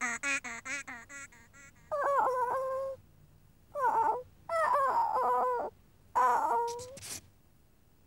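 A cartoon character's squeaky nonsense voice: a rapid warbling chatter that fades out in the first second and a half, then four high-pitched moaning cries from Morph, sick in bed.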